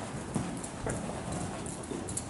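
Horse trotting on sand arena footing: a series of soft, uneven hoofbeats.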